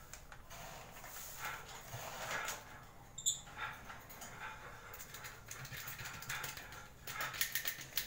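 African lovebirds chirping on and off from their cages, mixed with the crackle of a plastic bag and plastic containers being handled, most busily near the end. There is a single sharp click about three seconds in.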